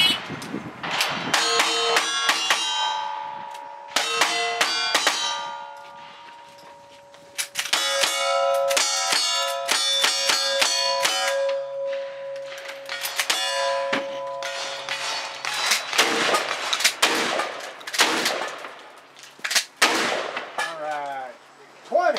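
Rapid strings of low-recoil gunshots at steel plate targets, each hit setting a plate ringing so the rings overlap into long metallic tones; the middle string, after a short lull, is fired from a lever-action rifle. A sparser string of shots follows near the end.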